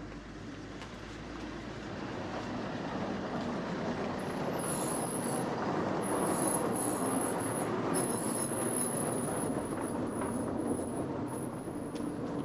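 A motor vehicle passing out of sight: a rushing noise that swells over the first several seconds and fades near the end, with a thin high tone above it from about four seconds in.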